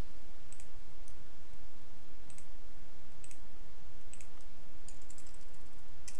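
Computer keyboard keys clicking: a few faint, scattered keystrokes, more of them near the end, over a steady low hum.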